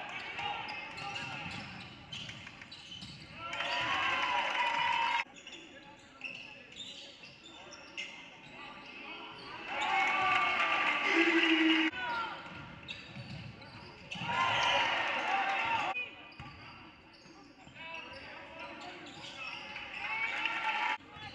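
Game sound in a school gym: a basketball dribbling on the hardwood court amid voices from the players, benches and spectators. It gets louder in three stretches that start and stop abruptly.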